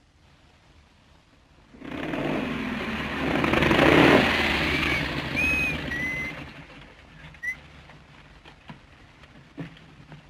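Motorcycle with sidecar running: after a quiet start its engine comes up loud about two seconds in, swells and then fades away by about seven seconds. A few short high whistle-like tones sound over it in the middle.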